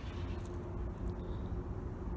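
Steady low rumble of outdoor background noise, with a faint steady hum over it.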